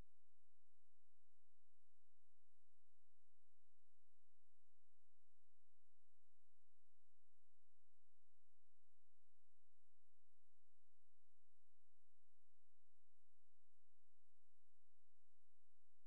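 Faint, steady electronic hum made of a few thin, unchanging tones over a low hiss, with no other sound.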